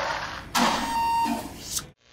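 Sound effects for an animated gear logo: two bursts of noise, the second starting abruptly about half a second in, carrying a brief ringing tone and ending in a short rising sweep before cutting off.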